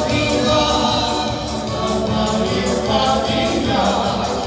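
Romani dance band music with singing over a steady, fast beat.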